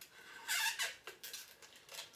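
Hands working a small plastic package, giving a short squeak about half a second in and a second, falling squeak near one second.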